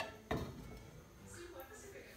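A glass holding a wooden spoon set down on a gas stove's metal grate: a sharp knock at the start and a lighter one just after, then quiet kitchen room tone.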